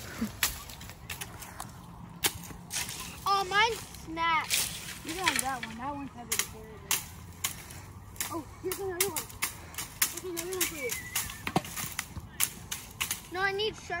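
Sticks whacking dry tumbleweed and brush, a long irregular string of sharp cracks and snaps. Children's voices shout at intervals in between.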